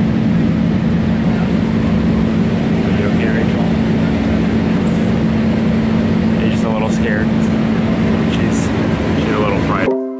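Loud, steady airliner cabin noise: engine and airflow drone with a constant low hum underneath. It stops abruptly near the end.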